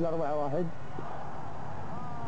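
A man's voice in Arabic says a football score. Then comes a pause filled with steady background hiss, with faint steady tones rising in just before the end.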